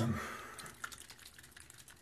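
A few faint, light clicks from handling a small nose-medicine bottle.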